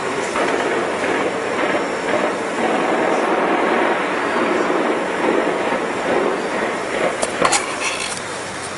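Heavy automatic gunfire that merges into a continuous rattling clatter, with a few sharper single shots bunched together about seven seconds in.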